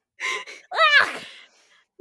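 A woman's raised voice exclaiming 'the iodine!' with a laugh, then a high, rising 'ah!' that trails off into breath.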